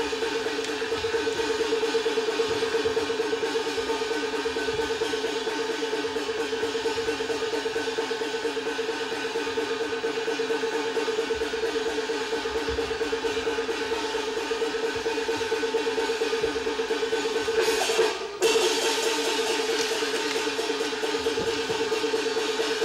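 Peking opera instrumental accompaniment for stage combat: a sustained high melodic line over fast, driving repeated notes, with light percussion. The sound cuts out briefly about 18 seconds in.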